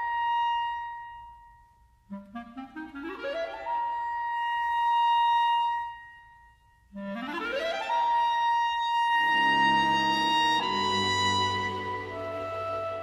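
Clarinet in B flat, playing mostly alone: a held high note dies away, then two fast rising runs each climb to a long held high note, with brief pauses between phrases. Near the end, lower sustained notes from the rest of the ensemble enter beneath it.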